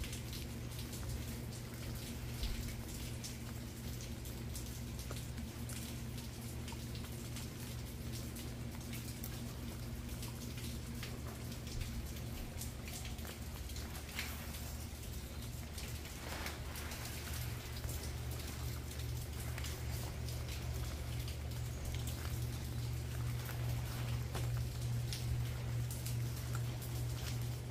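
Light rain pattering in scattered drips on leaves, over a steady low hum.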